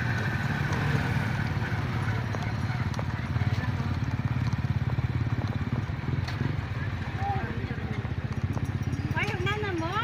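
Small motorcycle engine running steadily at low speed with a fast low pulsing, heard from on board while riding slowly. A voice comes in briefly near the end.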